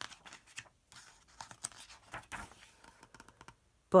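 A page of a hardcover picture book being turned by hand: paper rustling and sliding in a series of short scrapes.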